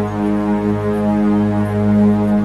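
Meditation music: a sustained drone tone on G sharp, about 207 Hz, held steady with overtones stacked above it and a lower hum beneath, swelling slightly in level.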